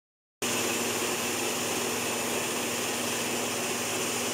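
A 3-in-1 electric rice mill with hammer mill and blower running steadily: an even rush of motor and blower noise over a steady low hum.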